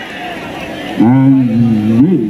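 A man's loud, long held shout starting about a second in, a cry of reaction to a saved penalty kick.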